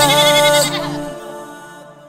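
A man's voice holds the closing note of a naat over its backing music, the note quavering, then the music fades out over the next second or so.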